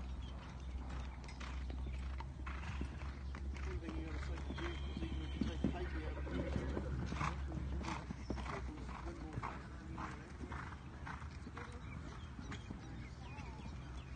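Hoofbeats of a horse cantering on a sand arena and taking jumps: a run of short strikes at an uneven spacing.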